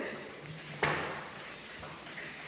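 A single sharp thud about a second in, fading quickly, over quiet room tone.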